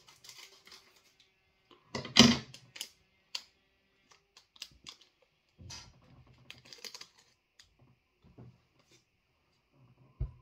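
Irregular crinkling and clicking of a snack packet being handled while a chip is taken out, with the loudest burst of crackles about two seconds in.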